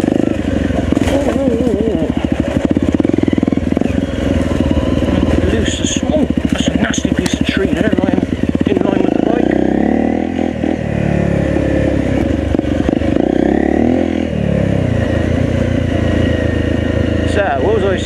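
Enduro motorcycle engine pulling along a rough dirt trail, its revs rising and falling with the throttle. A few sharp clicks come about six to seven seconds in, and the revs drop away near the end.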